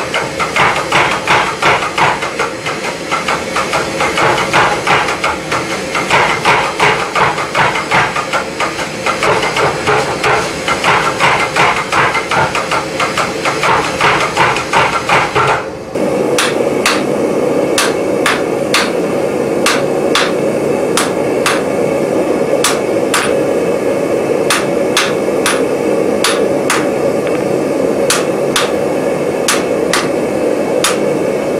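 Mechanical power hammer pounding a red-hot bar of S7 tool steel with rapid, even blows, several a second, drawing the handle to an octagon. About sixteen seconds in this gives way to a hand hammer striking the hot bar on a steel anvil at a slower, uneven pace, each blow ringing, over a steady rushing noise.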